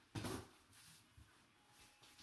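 Cardboard shipping box being handled and turned over on a wooden floor: a short scuff or bump just after the start, then faint rubbing of cardboard.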